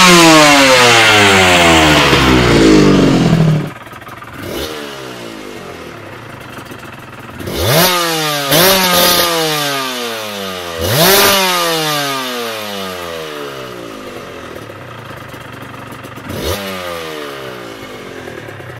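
Aprilia RS 250 two-stroke V-twin exhaust, revs falling away from a high throttle blip, with a sudden cut about three and a half seconds in. A second RS 250 then idles with quick throttle blips, three near the middle and one near the end, each rev falling back to idle.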